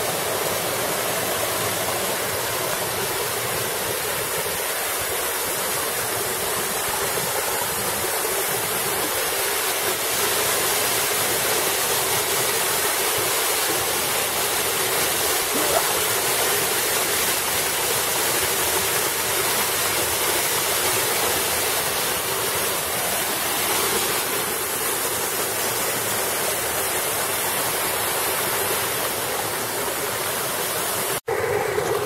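Small waterfall cascading down over boulders into a rocky pool: a steady, unbroken rush of falling water.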